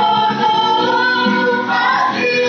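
A small choir of women with a man among them, singing together, the voices holding long notes that move smoothly from pitch to pitch.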